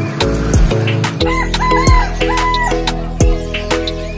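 A rooster crowing once, a wavering call of about four linked syllables lasting about a second and a half, starting about a second in. Background music with a steady beat plays throughout.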